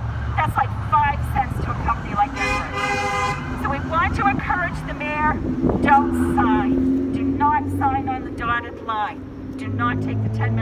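A car horn honks for about a second, a couple of seconds in, over people talking; from about six seconds in a lower steady tone holds for about three seconds.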